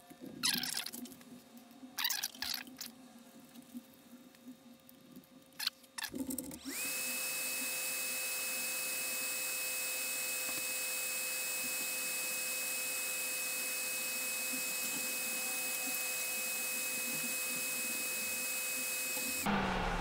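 A few light knocks and clicks as a circuit board is handled and turned over. Then a small motor starts with a quick rise in pitch and runs steadily with a high whine and hiss, cutting off suddenly just before the end.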